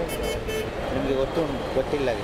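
A vehicle horn sounds one short steady toot at the start, over street traffic noise.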